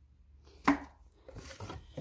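Light knocks and scrapes of a cardboard storage box being handled, a scattered run of small taps in the second half.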